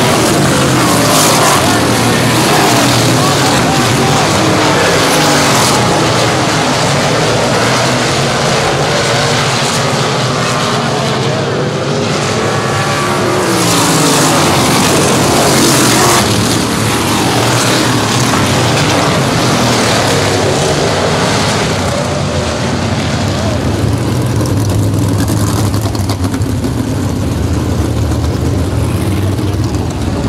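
Pavement winged sprint cars racing on an oval, their V8 engines revving up and down in pitch as the cars pass through the corners and down the straights. Toward the end the sound settles into a steadier, lower engine note.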